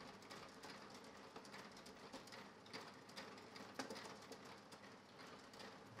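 Mahjong tiles clicking faintly and irregularly as players draw and discard on the table, with a slightly louder click about four seconds in.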